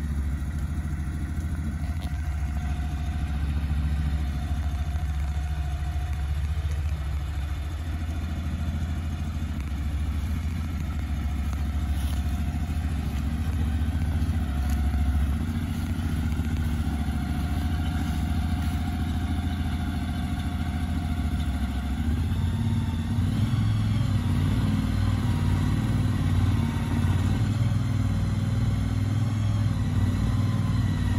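Engine running steadily with a low hum, growing louder and fuller about two-thirds of the way through.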